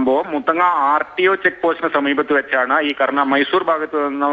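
A news reader's voice-over speaking continuously in Malayalam, sounding thin with the highs cut off.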